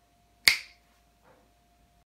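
A single sharp finger snap about half a second in.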